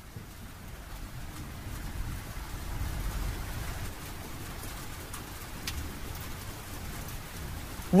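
Steady rain-like hiss with a low rumble underneath, fading in over the first few seconds and then holding. Music with singing comes in right at the end.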